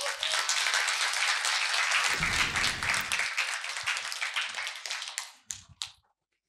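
Audience applauding: dense clapping that thins out and dies away about five and a half seconds in. A brief low rumble sits under the clapping in the middle.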